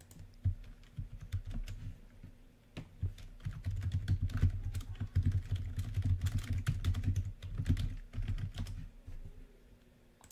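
Typing on a computer keyboard: a fast, uneven run of key clicks that starts about half a second in, is busiest in the middle and stops about nine seconds in.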